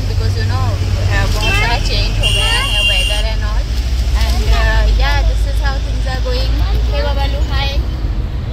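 A woman talking inside a moving car, over the steady low rumble of the car's engine and road noise in the cabin. About two seconds in, a steady high-pitched tone sounds for about a second.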